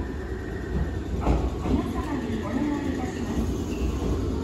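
Low, steady rumble of a train at a railway station platform, with a person's voice starting about a second in.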